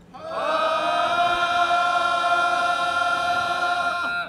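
A group of voices chanting one long call in unison, sliding up into its pitch at the start and then held steady for about three and a half seconds, typical of the rhythmic calls of a keyari (feathered-spear) procession.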